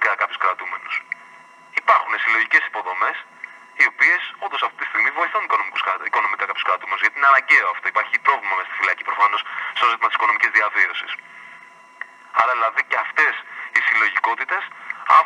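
Speech only: a man talking over a telephone line, with short pauses.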